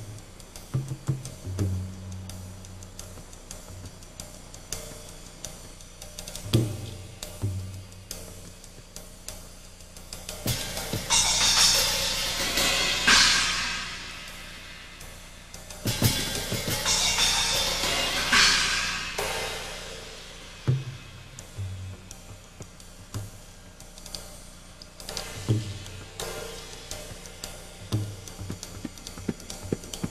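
Solo percussion on a hybrid setup of Zildjian cymbals, drums and tabla: scattered drum strokes, some low and pitched. Two loud cymbal swells build up, one about ten seconds in and one about sixteen seconds in, each lasting a few seconds, before the strokes thin out again.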